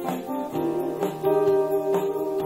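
Live music: an acoustic-electric guitar plucked in a steady rhythm, with a long, slightly wavering melody note held through the second half.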